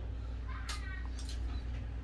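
Steady low hum, with a brief faint high-pitched call a little under a second in.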